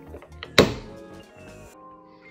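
Clear plastic Pro-Mold magnetic card holder snapping shut under the fingers, with one sharp click a little over half a second in and a couple of faint clicks just before it.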